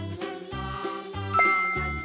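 Light children's background music with a bouncing bass line, joined about a second and a half in by a bright ding sound effect that rings on.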